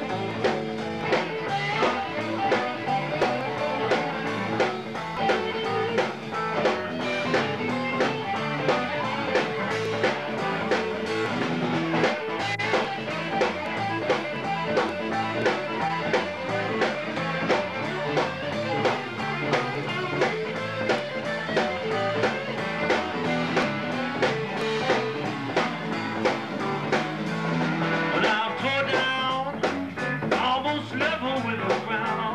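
Live electric blues band playing an instrumental passage: electric guitar over a drum kit keeping a steady beat.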